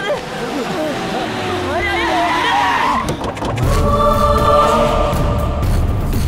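Distressed shouting and wailing voices, then a dramatic film score with a choir over a heavy low bass entering a little past halfway.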